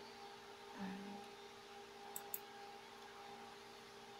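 Two quick computer mouse clicks in close succession about two seconds in, over a steady electrical hum.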